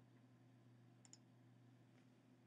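Near silence with a low steady hum, broken about a second in by two faint quick clicks of a computer mouse button.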